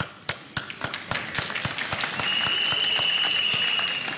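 Audience applause, with many separate hand claps. About halfway through, a long, steady high whistle joins in and holds almost to the end.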